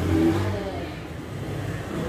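A low, steady engine hum from a running motor vehicle, with a man's voice murmuring briefly at the start.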